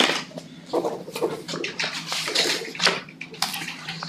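Sheets of paper rustling and being shuffled on a table, coming and going unevenly, over a low steady hum.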